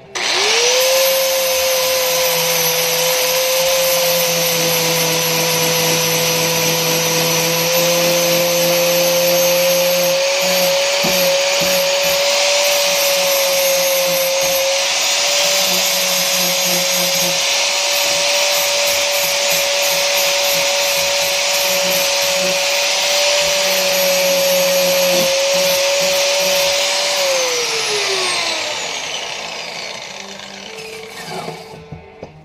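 Angle grinder with a wire wheel switched on, spinning up and running at a steady high whine with rough scraping and rattling as it scours the rusty hatchet head. Near the end it is switched off and its whine falls away as it spins down.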